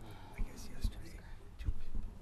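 Low, indistinct talking and whispering, not spoken into a microphone, with a few dull thumps.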